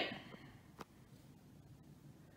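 Near silence: a faint room tone, broken by one short, faint click a little under a second in.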